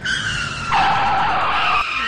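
Vehicle tyres screeching in a skid: one long squeal that drops slightly in pitch, then turns louder and lower a little under a second in, before breaking off shortly before the end.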